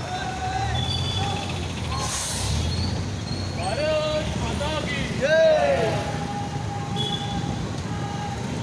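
Low rumble of a city bus engine close by, with a short hiss about two seconds in that sounds like its air brakes. Loud voices shout out over the traffic from about the middle of the stretch.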